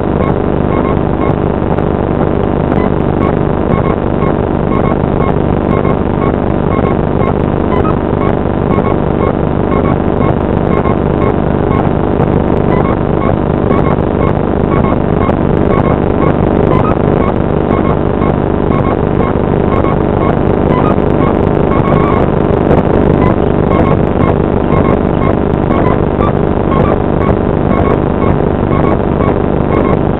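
Airliner engine noise heard inside the passenger cabin while the aircraft taxis on the ground. It is a loud, steady drone with a low hum and faint repeating ticks.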